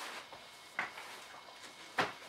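Two short plastic clicks from handling the infant car seat on a pram frame, a faint one a little under a second in and a sharper one at the end.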